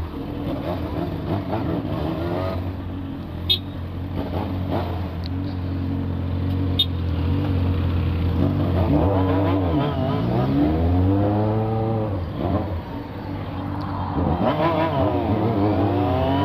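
Yamaha FZ6 inline-four motorcycle engine running at low speed in traffic, then revving up twice as it accelerates, with the pitch rising and dropping between pulls.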